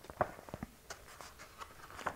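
Light handling sounds of turning to the next page: a few short, soft clicks and taps with a faint rustle, the sharpest about a quarter of a second in.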